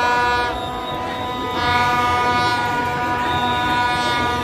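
Several long, steady horn blasts overlapping over the noise of a celebrating street crowd: one held note fades about half a second in and another sets in about a second and a half in.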